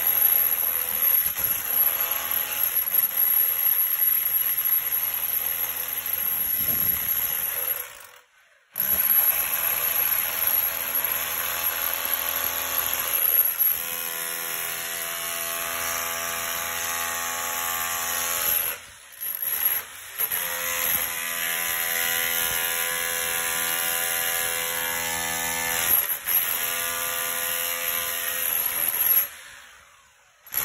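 Electric rotary hammer with a chisel bit chipping out the concrete floor around a drain pipe, its motor running steadily with a hammering rattle. It stops briefly about a third of the way in, again around two-thirds, and just before the end.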